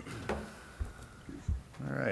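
Quiet room sounds in a council chamber: a brief muffled voice sound at the start, two dull low thumps about a second apart, and another short voice sound near the end.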